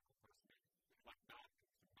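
A man's voice speaking, very faint, in short broken phrases with small gaps between them.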